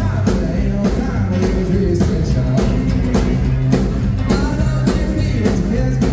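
A live rockabilly band of upright bass, electric guitar and drums plays with vocals, a steady drum backbeat hitting about twice a second.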